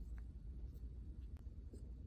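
Faint glue stick rubbing and tapping on paper and foam, a few small scratchy clicks over a steady low room hum.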